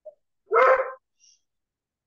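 A single dog bark, about half a second long, heard through a video-call microphone.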